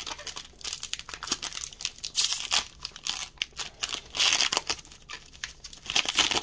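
Plastic foil wrapper of a Magic: The Gathering booster pack crinkling and tearing as it is opened, in irregular bursts.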